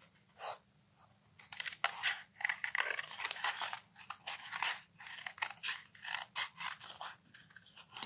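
Scissors cutting metallised card: a short cut about half a second in, then a steady run of crisp, crunchy snips from about a second and a half on.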